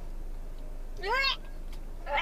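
A single short, high-pitched squeal about a second in, rising then falling in pitch, over a steady low hum.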